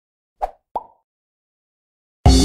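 Two short pop sound effects of an animated intro graphic, about a third of a second apart; the second leaves a brief ringing tone.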